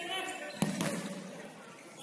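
A single thud of the futsal ball on the wooden court about half a second in, echoing around the sports hall, with players' shouts around it.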